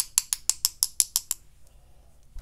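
One paintbrush tapped rapidly against the handle of another to splatter white gouache onto wet watercolour paper, making light, evenly spaced clicks about six a second. The tapping stops a little over a second in.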